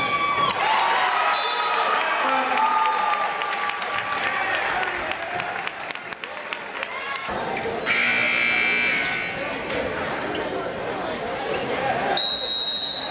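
Gymnasium scoreboard horn sounding once for about a second, about eight seconds in, over voices in the crowd. In the first few seconds there are sneaker squeaks and knocks on the hardwood court.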